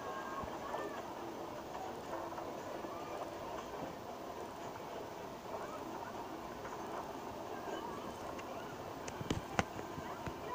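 Theme-park ride train running along its track, heard through a phone's speaker, with faint crowd voices underneath. Two or three sharp clicks come near the end.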